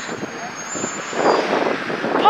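Strong wind buffeting a phone's microphone: a rough, rushing noise that swells about halfway through.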